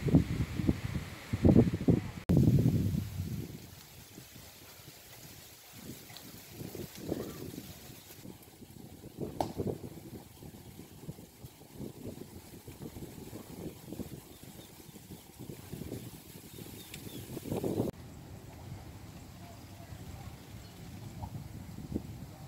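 Outdoor ambience with people's voices in the background, clearest in the first few seconds and then only in short snatches over a faint steady background.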